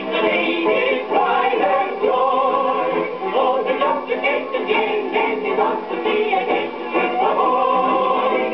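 Eclipse 78 rpm shellac record playing on a gramophone: music-hall singing with wavering sung notes over band accompaniment, with little treble.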